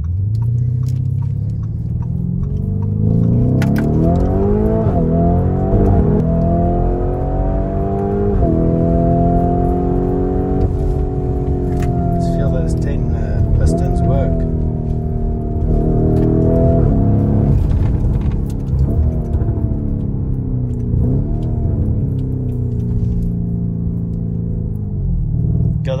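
Lamborghini Urus S twin-turbo V8 heard from inside the cabin, pulling hard under acceleration. Its note climbs over the first few seconds and then holds high, with several brief dips at gear changes.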